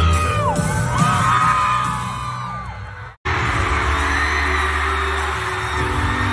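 Live band music in a large arena, heard through a phone microphone, with sliding, bending melody lines over a steady bass. About three seconds in it breaks off abruptly and resumes as live music over a cheering crowd.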